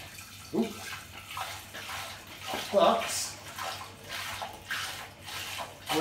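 Apple juice pouring from a carton through a plastic funnel into a demijohn: a running, splashing stream of liquid that rises and falls unevenly in level.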